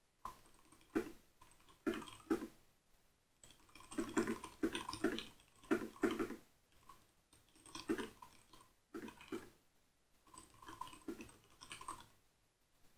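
Computer keyboard typing: runs of quick keystroke clicks in bursts of one to three seconds, broken by short pauses.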